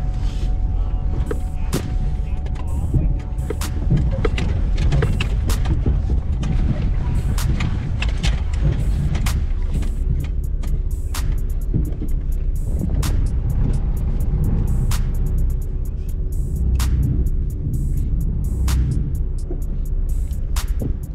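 Low rumble of a Toyota Land Cruiser 80 Series crawling down slickrock ledges, with frequent sharp clicks and knocks throughout. Background music plays along with it.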